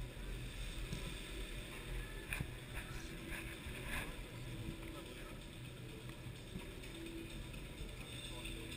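Chairlift ride: a steady low rumble with a faint on-and-off hum, and a few soft clicks a little before the middle.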